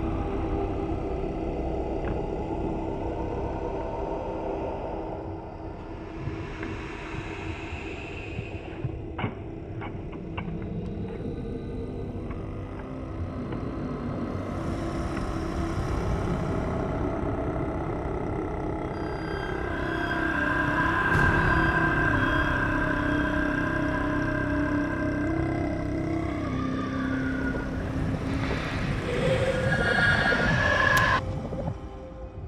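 Ominous low drone of film score and sound design: a steady rumble under held tones, with a few faint ticks about a third of the way in. A higher held tone joins about two-thirds through, and the drone swells near the end.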